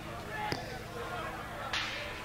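Live club recording between songs: steady amplifier hum under faint crowd chatter, with a sharp knock about half a second in and a short hissy burst near the end.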